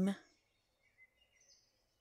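A spoken word trails off, then a few faint, thin bird chirps come about a second in.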